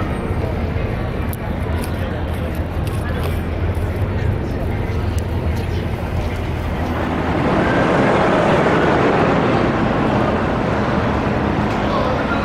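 Busy city street ambience: a steady low rumble of traffic, then a louder hubbub of many voices from about halfway through.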